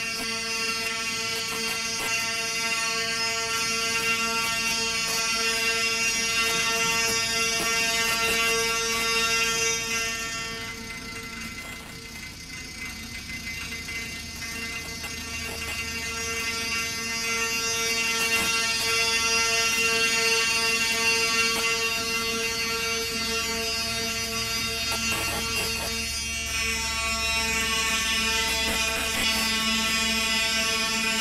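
A sustained drone held on one steady pitch with a dense stack of overtones, played as live experimental music. It thins out for a few seconds in the middle and swells again, and a low hum joins it in the last several seconds.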